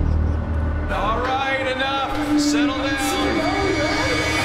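Trailer soundtrack: a deep low hit at the start and a held music tone underneath, with a person's voice from about a second in to near the end.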